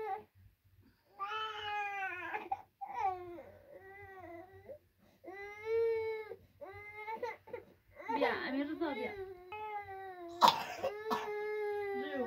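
A young child crying in a series of drawn-out, high-pitched wails with short gaps between them, with a sharp, louder burst about ten seconds in.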